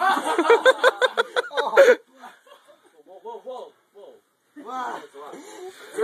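Boys laughing hard in quick, loud bursts for about two seconds, then quieter laughter and voices.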